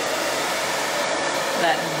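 BlowTYME hand-held hair dryer running steadily, a constant even rush of air. A woman starts speaking near the end.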